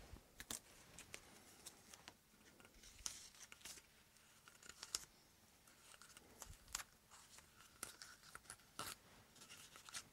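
Faint handling noises from a plastic 35mm film can and cardboard discs being worked by hand: scattered light clicks and taps with a few brief scratchy rustles.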